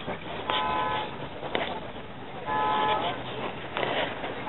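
A vehicle horn sounds two short blasts about two seconds apart. Each lasts about half a second and holds a steady chord of several tones, over low background noise.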